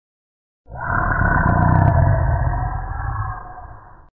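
A dragon roar sound effect: a single long, deep roar that starts about a second in and fades away toward the end.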